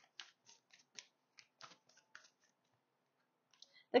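Tarot deck being shuffled by hand, a run of soft card clicks about four a second that stops a little over two seconds in.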